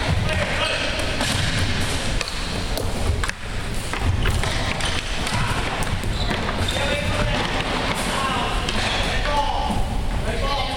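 Floor hockey play in a gymnasium: sticks knocking the ball and floor on the wooden court, with short impacts throughout and players' voices calling, echoing in the hall.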